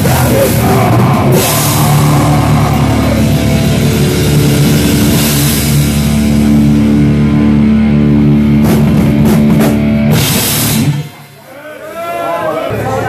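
Live heavy metal band playing loud: distorted electric guitars and bass over a drum kit with crashing cymbals. The song stops abruptly near the end.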